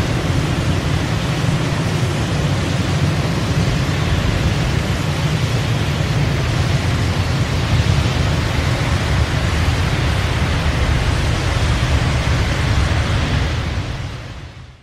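Winter storm sound effect: a steady rushing noise with a deep rumble, fading out near the end.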